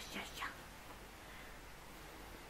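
Soft whispering in the first half second, then quiet room tone.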